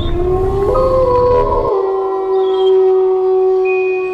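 Eerie held tones from a horror soundtrack, several notes sustained together over a low rumble that cuts off suddenly under two seconds in, leaving one long steady tone.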